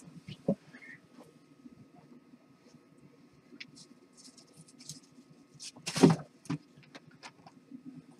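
Handling noise from a video camera being repositioned: scattered faint clicks and rustles, with one louder knock about six seconds in.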